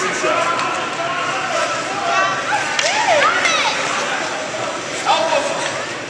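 Echoing indoor ice-rink ambience during a youth hockey game: a steady wash of distant voices, with a few rising and falling shouts a couple of seconds in, and occasional light clacks of sticks on the ice.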